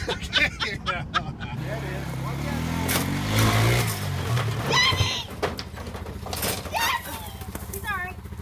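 An engine revving, its pitch climbing and falling for a couple of seconds, then running steadily at a low idle, with people's voices over it.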